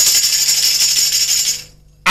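A tambourine shaken in a continuous jingle roll, its metal jingles rattling steadily and then fading out near the end.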